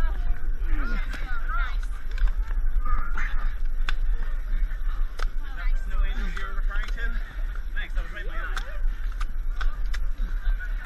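Indistinct voices of several people in a mud pit, with scattered short calls and shouts over a steady low rumble and occasional sharp clicks of handling noise.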